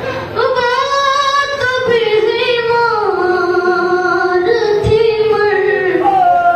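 A boy's solo voice chanting a paish-khawani elegy, unaccompanied, into a microphone. The melody moves in long held notes that glide slowly from one pitch to the next.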